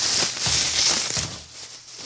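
Rustling handling noise of a hand-held phone being moved about, with a few light knocks, dying down about a second and a half in.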